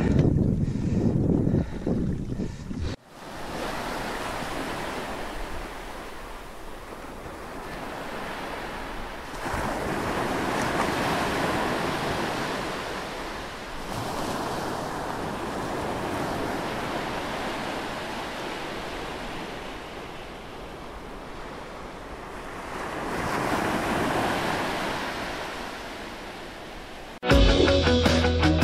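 Wind rumbling on the microphone for about three seconds, then a sudden change to an ocean-wave wash that slowly swells and fades. Music starts abruptly near the end.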